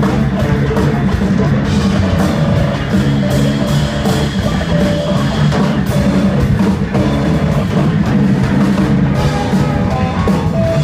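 Live band playing loud, dense music without a break: drum kit hits over electric guitar, bass and saxophone.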